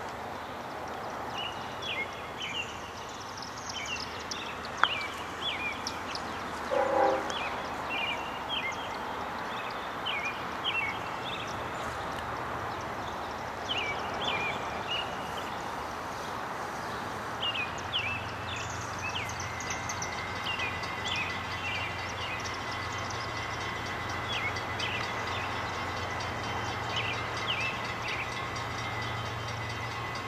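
Freight train rolling by with a steady rumble and wheel noise, while the engine of an approaching Norfolk Southern diesel locomotive grows into a steady low hum over the last dozen seconds. Small birds chirp throughout.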